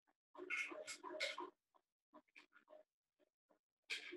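Faint, short animal calls in irregular bursts, the densest cluster about a second in.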